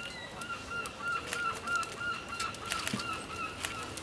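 A bird calling in a fast, even series of short notes, about four a second, with scattered clicks.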